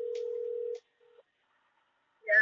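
Electronic telephone tone: one steady beep about a second long, then a brief second beep at the same pitch.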